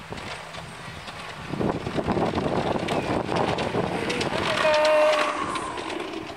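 Garden-scale model diesel train running along its track, a rumble with rail clicks that grows louder as it comes past, with a short held tone about four and a half seconds in.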